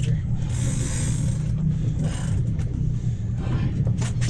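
Outboard motor idling with a steady low rumble, with a few faint knocks on top.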